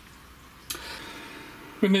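Faint room tone, then about two-thirds of a second in a steady hiss starts suddenly and runs on under a man's voice near the end.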